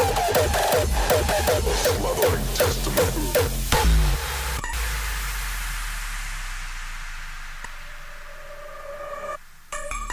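Hardstyle dance music from a live DJ set: a fast, hard kick beat with a synth line for about four seconds, then the beat drops out into a breakdown where a sustained wash and a held bass fade away. After a brief dip near the end, a new synth melody comes in.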